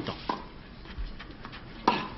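Tennis ball struck by rackets during a clay-court rally: two sharp hits about a second and a half apart, over low crowd and court background.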